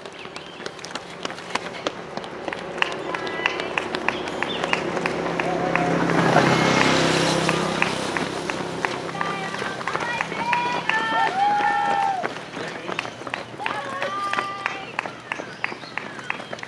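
Footfalls of many runners on the road, a quick uneven run of short ticks from running shoes. The overall sound swells to its loudest about six to seven seconds in and then eases off, with voices calling out now and then.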